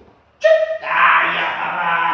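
A short pitched call about half a second in, followed by a loud, drawn-out voice-like sound that lasts over a second.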